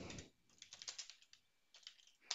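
Faint typing on a computer keyboard: a quick run of keystrokes from about half a second in, a short pause, then a few more near the end.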